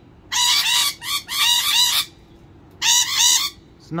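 Rainbow lorikeets screeching: three shrill, harsh bursts, each a quick run of notes lasting under a second, with short pauses between.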